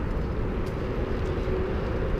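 BMX bike tyres rolling over concrete pavement: a steady low rumble.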